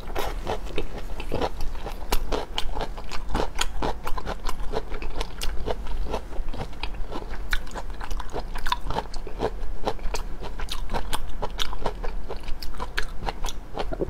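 Close-miked chewing of raw shrimp: a steady, irregular run of wet clicks and smacks from the mouth as it is chewed, several a second.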